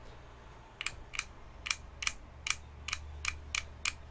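Sharp, light clicks of a finger flicking a resin artisan keycap on a mechanical-keyboard switch in a switch tester, about three a second, starting about a second in. This is a flick test of how firmly the cap grips the switch stem.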